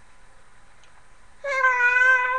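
A baby's long vocal squeal on one held, steady pitch, starting about a second and a half in and lasting about a second.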